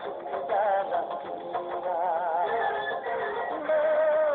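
A song with a singing voice: a melody sung with a strong wavering vibrato over music, the notes held longer and louder near the end.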